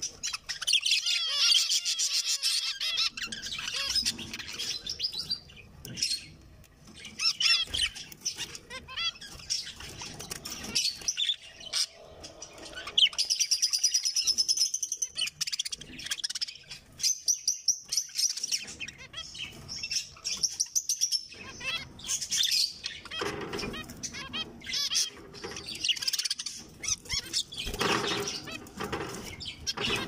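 Several zebra finches chirping and singing together in a cage. A quick run of repeated notes comes about halfway through.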